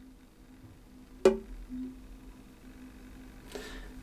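Ukuleles being handled: one sharp knock against an instrument about a second in, with a string ringing faintly throughout, and a soft rustle near the end.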